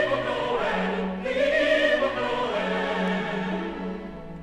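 Choir singing a Christmas carol with orchestral accompaniment, the sung notes held with vibrato over a steady bass line; the music is loudest in the first half and eases off toward the end.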